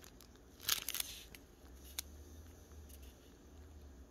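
Clear plastic bag of diamond painting resin drills crinkling briefly under the fingers about half a second in, followed by a single small tick at about two seconds.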